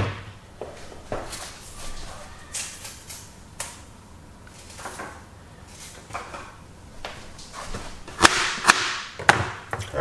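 Kitchen handling noises while ginger is being prepared: a sharp knock at the start, then scattered light knocks and rustles, and a quicker run of knocks and scrapes near the end.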